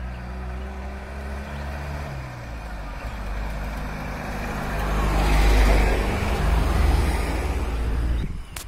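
A light truck's engine approaching and passing close by with tyre noise on the road, growing louder to a peak about five to seven seconds in and dropping away at the end.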